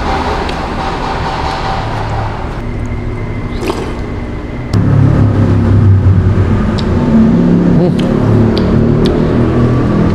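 Motor vehicle engine and road traffic noise, a steady low rumble that gets louder about halfway through, with a few light clicks.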